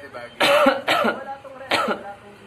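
A man coughing three times into his fist, three short loud coughs, the last one near the end.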